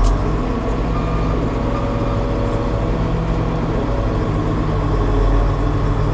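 Shantui SR12-5 vibratory soil roller's Weichai diesel engine running steadily as the roller drives along, heard from inside the cab, with the drum vibration switched off.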